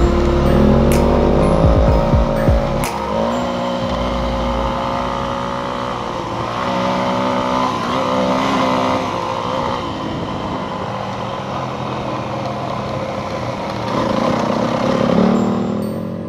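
Yamaha WR250F enduro motorcycle's 250 cc single-cylinder four-stroke engine, rising and falling in pitch as the throttle opens and closes on a gravel track, heard over a rush of wind noise. Background music plays over the first few seconds.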